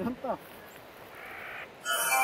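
A single short call, falling steeply in pitch over about half a second, at the start; music comes in just before the end.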